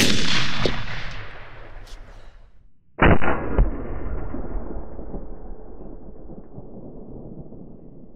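A 350 Legend AR carbine shot, its report echoing away over about three seconds. About three seconds in, a second, duller bang with another crack just after it: the shot heard at the gel target end, echoing out slowly.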